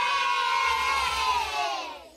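A group of voices cheering, held and then trailing off and fading out near the end.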